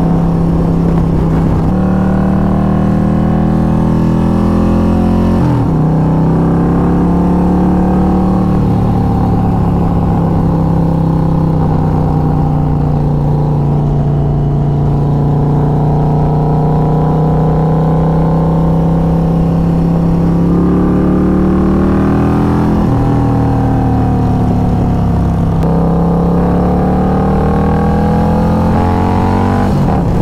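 Harley-Davidson touring motorcycle's V-twin engine running at road speed, heard from the rider's seat. Its pitch drops about five seconds in, holds fairly steady, then climbs again twice in the latter part.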